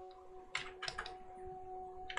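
A few computer keyboard key clicks in a quick cluster, about half a second to a second in.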